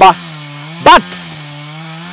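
A chainsaw running steadily at a distance, a droning motor tone that dips a little in pitch past the middle and then rises again.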